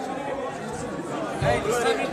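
Crowd chatter: people talking over one another, getting louder about one and a half seconds in.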